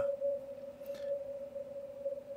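Receiver audio from a Yaesu FTdx5000MP in CW mode on the 17-metre band: a steady thin tone at the CW pitch over faint hiss, the band noise squeezed through a narrow CW filter with audio peak filter and digital noise reduction. No keyed Morse stands out from it.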